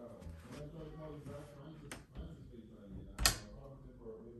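Muffled talk in the background, with a light click about two seconds in and a sharper, louder knock a little after three seconds as a child's hand meets the bedroom door.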